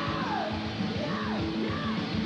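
Heavy metal band playing live, the singer belting high notes that slide downward three times over a steady wall of distorted guitar, bass and drums.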